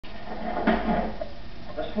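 A man's voice, a short burst of speech about a second in, then more speech beginning near the end.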